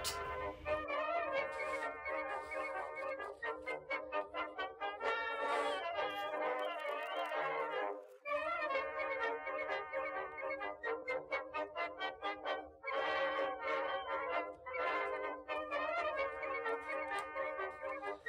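Background music led by brass instruments, playing quick repeated notes, with a brief break about eight seconds in.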